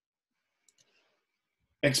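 Near silence: a pause in speech, with two faint ticks about two-thirds of a second in. A man's voice resumes near the end.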